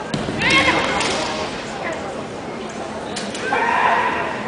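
Raised, shout-like voices echoing in a large gymnasium hall: a knock right at the start, then one loud voice about half a second in and another near the end, over a steady hubbub.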